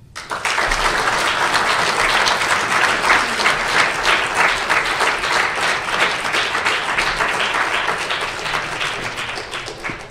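Audience applauding in a conference room: dense clapping that starts right away, holds steady, then thins out toward the end.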